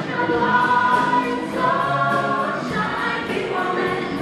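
A stage-musical ensemble singing a number together with instrumental accompaniment and a steady beat, the voices holding long sung notes.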